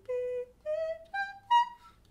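A woman singing four held notes that climb step by step, an E minor arpeggio going up high, the top note the loudest and shortest.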